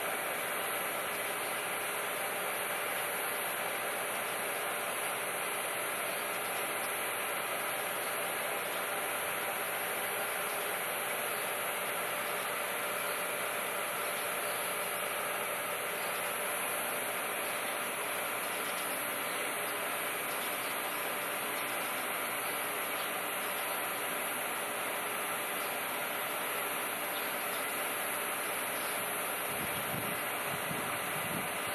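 Steady hum and hiss of a Choshi Electric Railway 2000-series electric train standing at the platform, its onboard equipment running while the train is at rest.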